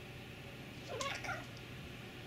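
A Bengal cat gives one short meow about a second in, its pitch rising and then falling.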